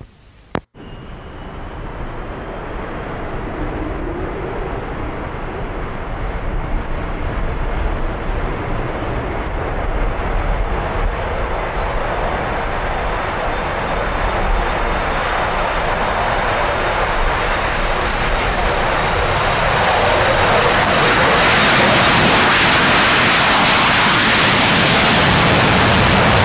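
Jet airliner engine noise building steadily for about twenty seconds, with a thin high whine, after a short click and dropout near the start. It is at its loudest in the last few seconds.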